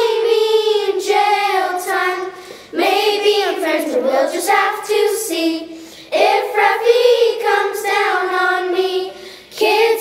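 Children singing a song in phrases, with short breaks between lines.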